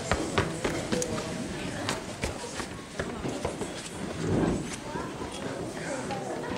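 Indistinct murmur of voices in a hall with many scattered knocks and footstep-like clicks, as of people shuffling and shifting about.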